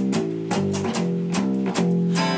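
Two acoustic guitars strumming chords in a steady rhythm, about three strokes a second, in a short instrumental gap of a folk song.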